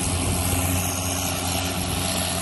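Case IH 2188 combine's diesel engine running steadily as the combine drives slowly along, a constant low hum.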